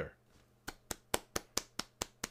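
A run of light, sharp clicks, evenly spaced at about four or five a second, starting a little under a second in.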